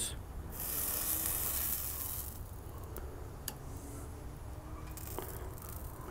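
A hot flat-top griddle hissing in a sizzle that swells for about two seconds and then settles lower. A few light clicks sound midway as tomato slices are handled and laid onto the sandwich.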